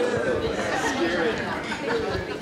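Several people talking at once: overlapping chatter from a seated room of guests.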